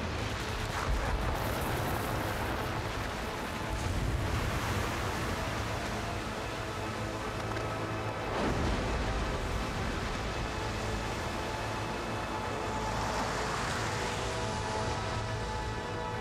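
Ice from the calving front of Store Glacier crashing into the sea, a rushing noise of falling ice and churning water that surges about one, four and eight seconds in. Orchestral soundtrack music with held notes plays over it, growing stronger in the second half.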